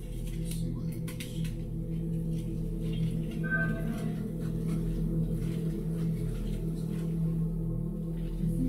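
A steady, low ambient drone, like a held singing-bowl tone, with a brief higher tone about three and a half seconds in.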